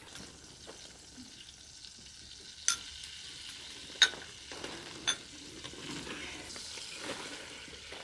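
Food preparation with clay dishes: a soft, steady rustling hiss with three sharp clinks of crockery about a third, a half and two-thirds of the way through.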